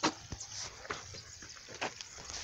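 A few faint, scattered clicks and ticks over a quiet background, with one sharper click at the very start.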